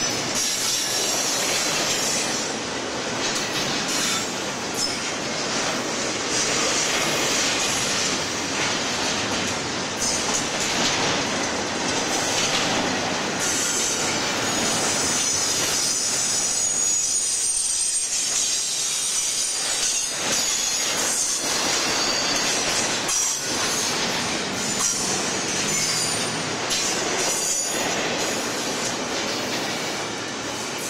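Double-stack intermodal container train rolling past at close range: steel wheels clattering steadily over the rails, with a high-pitched wheel squeal that comes and goes.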